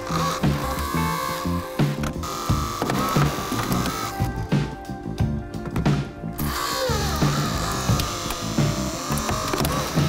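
Holmatro Pentheon battery-powered hydraulic combi tool running its pump motor while spreading a car door, a machine whine that shifts in pitch as it works. Background music with a steady beat plays throughout.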